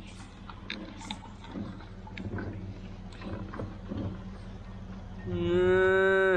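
A cow moos once, one long steady call near the end. Before it there are faint irregular clicks and rustling as a muddy tie-down strap is handled.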